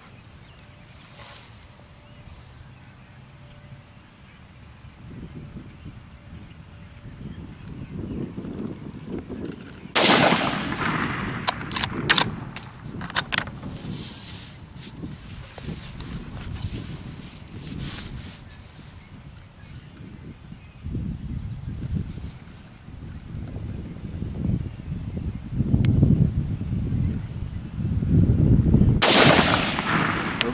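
.308 Ruger American bolt-action rifle firing twice, about 19 seconds apart, each shot a sharp crack with a trailing echo. Short clicks follow the first shot as the bolt is worked, and a low rumble comes and goes in between.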